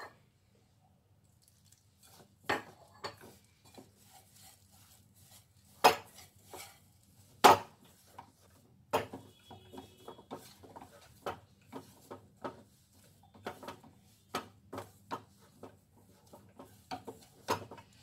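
Stainless steel bowl knocked and scraped as a hand mixes wheat flour and water into dough: irregular knocks of varying strength, two louder ones about six and seven and a half seconds in, then a run of smaller taps.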